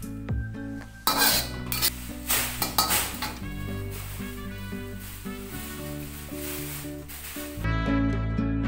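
Metal spatula scraping across a wok in a few sharp strokes, with food sizzling, as stir-fried greens are scraped out onto a plate; background music plays throughout and changes near the end.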